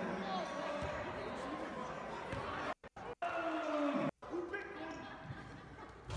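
A basketball bouncing on a gym's hardwood floor, with faint voices echoing in the hall. The sound cuts out completely for short moments a few times around the middle.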